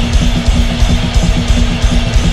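A heavy band playing live with no vocals: distorted electric guitar and bass hold a low note over fast drumming, with rapid kick-drum strokes and cymbal hits.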